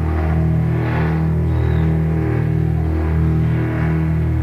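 Heavy metal band music from a raw live tape: a dense, sustained low chord droning, with a swell about once a second.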